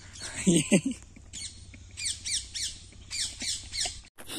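A short laugh, then a bird calling in quick runs of high, sharply falling notes, several a second.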